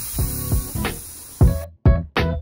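Air hissing steadily out of a bicycle inner tube's Presta valve as the tyre is let down, cutting off suddenly about one and a half seconds in. Background music plays over it.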